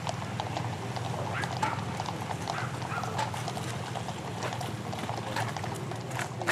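Horses' hooves clip-clopping on a paved street: many irregular, overlapping strikes from a mounted column, over a steady low hum.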